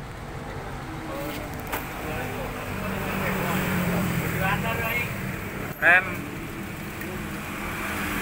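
Steady engine or traffic noise with a low hum underneath, and a short call of "rem" (brake) about six seconds in.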